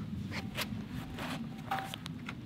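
Faint scuffing and rustling as a person climbs down off a steel I-beam: sneakers and clothing brushing the metal in a few short strokes over a low steady background.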